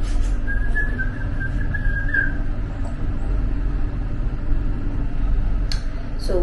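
Steady low rumble inside a moving lift car. A thin, wavering whistle-like tone sounds for about two seconds near the start.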